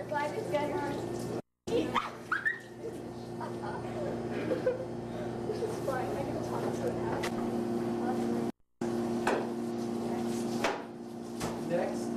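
Indistinct voices in a room over a steady low hum, with a few light clicks. The sound cuts out completely twice, briefly: about a second and a half in and again near the end of the ninth second.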